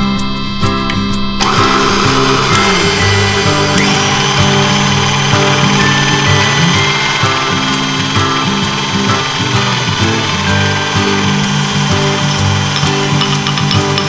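Electric stand mixer with a wire whisk starting up about a second and a half in, then running steadily as it beats whipped cream with matcha powder and custard cream, over background music.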